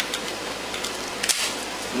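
Faint handling of a Kel-Tec P3AT pistol and its magazine over a steady background hiss, with one sharp click about a second and a quarter in.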